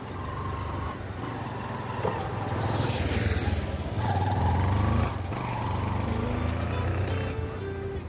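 A motorcycle approaches and passes close by about three seconds in, its engine noise swelling and then easing as it rides away. Background music plays throughout.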